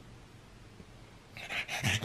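A pug stirring on its back on bedding: quiet at first, then, about a second and a half in, a few short, breathy noises from the dog.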